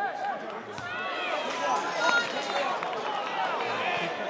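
Several voices shouting and calling out at once around a football pitch, overlapping with no clear words.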